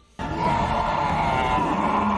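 Film soundtrack of a battle climax: a dramatic orchestral score with a choir-like swell comes in suddenly just after the start and stays loud, over a dense bed of battle noise.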